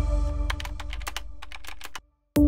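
Logo sting sound design: a held synth chord fading out, overlaid from about half a second in by a quick run of typing-like clicks.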